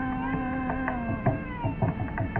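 Carnatic vocal music: a male singer holds one long steady note that ends about a second and a quarter in. A run of quick mridangam strokes follows.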